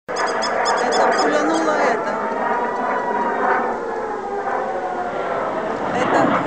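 Rocket-alert civil defense siren wailing, its tone gliding slowly down, over a mix of people's voices. A fast run of high pips sounds in the first two seconds.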